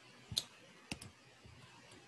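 A few faint, sharp clicks of a stylus tapping on a tablet screen while handwriting: the strongest about a third of a second in, two more close together about a second in.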